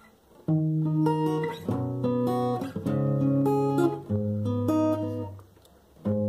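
Acoustic guitar playing a short picked phrase: single notes plucked one after another and left ringing into each other, starting about half a second in and dying away near the end.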